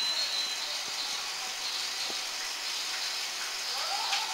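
Battery-powered Rail King toy train running on its plastic track: its small motor and wheels make a steady whirring hiss, with a few faint clicks.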